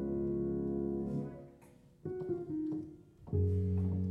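Slow solo piano improvisation: a held chord dies away almost to silence, a few soft notes follow, then a new low chord is struck near the end.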